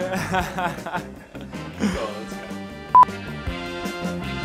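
Background music with a steady beat under a man's speech and laughter. About three seconds in comes a single short, high electronic beep, the loudest sound.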